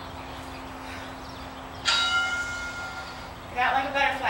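A single bell-like chime rings out about two seconds in and fades over about a second and a half.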